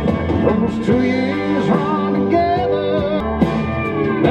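A song with singing and guitar playing over a BMW M4's car stereo, through newly fitted BimmerTech AlphaOne under-seat subwoofers. The bass is strong and comes up hardest in the first second and again near the end. To the listener the new subwoofers seem to move a little more air than the BAVSOUND ones.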